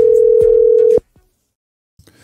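Telephone call tone, one steady pitch held and then cut off suddenly about a second in.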